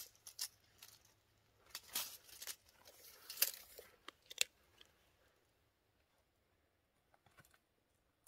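Footsteps crunching and snapping dry twigs and debris on a forest floor: a handful of short, sharp crunches over the first four seconds or so, then near quiet with a few faint clicks near the end.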